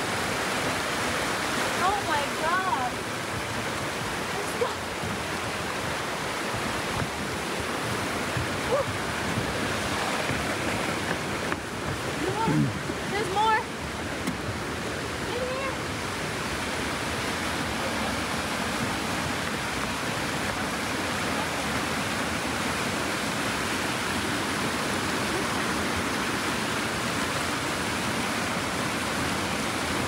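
Rapids of a rocky river rushing steadily: an even, unbroken water noise. A few faint voices come through briefly about two seconds in and again around twelve to fourteen seconds.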